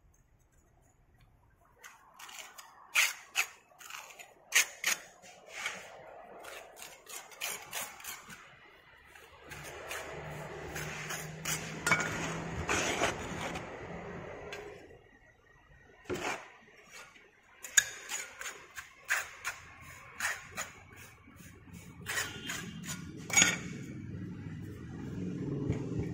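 Metal moulding hand tools clinking and scraping against a steel moulding flask as moulding sand is worked and rammed into it: many sharp clinks, with a rougher scraping stretch in the middle and denser packing noise near the end.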